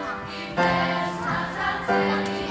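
Children's choir singing long held notes, with a new note starting about half a second in and another near the end.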